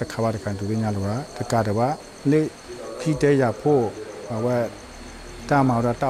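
Speech: a man talking over a microphone, with a steady, high-pitched chorus of insects underneath.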